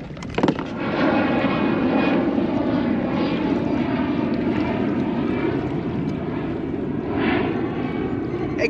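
Steady engine drone with a pitched hum that wavers slightly, starting about a second in and running on, after a single sharp knock just before it.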